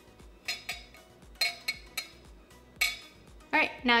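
A glass tumbler's rim clinking against a small ceramic bowl as it is turned in seasoning: about six sharp, separate clinks with a short ring.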